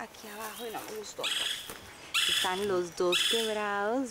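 Animal cries: a few soft calls, then three loud, high cries whose pitch slides downward, about a second apart.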